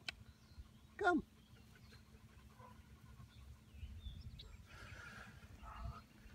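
A single short animal cry that slides down sharply in pitch about a second in, followed by faint low rustling.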